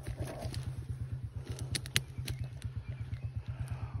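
Chinese moped engine idling: a steady, evenly pulsing low throb, with a few faint clicks about two seconds in.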